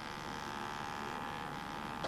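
A steady electric buzz with a high, even tone, cutting off suddenly at the end.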